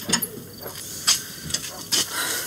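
A wooden door and footsteps: a few sharp clicks and knocks, the loudest about a second in.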